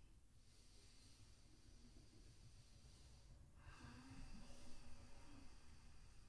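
Near silence with a person's faint breathing while pressing up into and holding a headstand. One longer, louder breath comes about halfway through.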